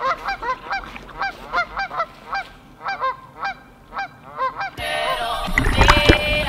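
A flock of geese honking, several short calls a second overlapping one another. About five seconds in, music comes in over them.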